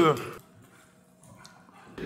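A drawn-out spoken syllable trails off in the first half-second. It is followed by near silence: faint room tone, with one faint tick midway.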